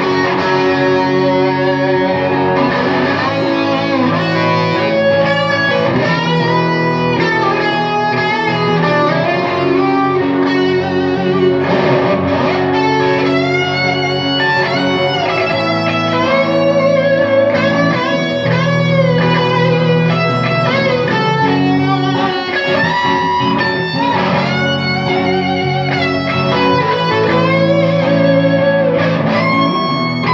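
Live band playing an instrumental passage with no vocals: electric guitar chords under a melody line on electric violin.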